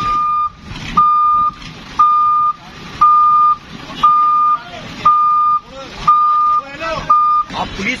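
A truck-mounted crane's warning beeper sounds once a second, a steady high beep about half a second long each time, eight times before it stops near the end. Men's voices talk between the beeps.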